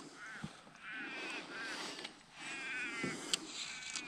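A crow-type bird (corvid) calling faintly: four short arched caws, then a longer wavering call about two and a half seconds in. A single sharp click follows just after.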